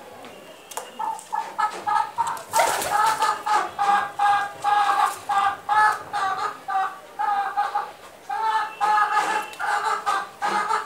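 A bird calling in quick, short repeated notes, two or three a second, each held at one steady pitch, starting about a second in.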